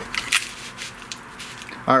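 Small hand-tool and handling sounds as a clear plastic bracket is held and its Allen-head screw tightened with a hex key: a couple of short clicks in the first half-second, then faint rubbing and handling noise.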